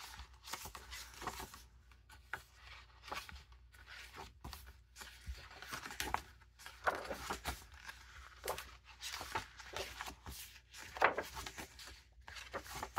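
Sheets of a 6x6 double-sided paper pad being flipped over by hand: quiet, irregular paper rustles and swishes as each page turns.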